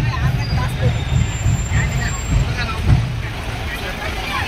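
Low, uneven engine rumble from slow-moving parade float trucks, with people talking around them.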